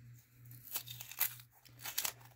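Thin white wrapping being torn and crinkled by hand, with a few sharp crackles about three-quarters of a second in, just after one second, and near the end. A steady low hum runs underneath.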